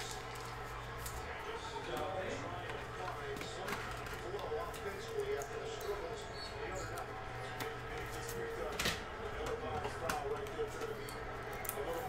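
Faint handling of a trading card being fitted into a clear plastic card holder: a few soft clicks and rustles over a steady low hum.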